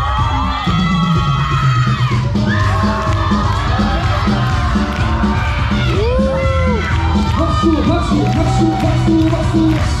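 Pop dance music with a heavy, steady beat playing loudly through a hall's speakers, under a crowd of teenagers cheering, shouting and screaming.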